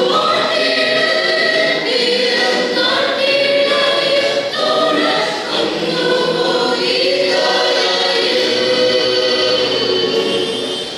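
Church choir singing a Malayalam Christmas carol together, in long held notes with brief breaks between phrases.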